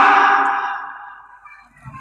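A man's loud shouted phrase through a public-address system, its echo dying away steadily over about a second and a half.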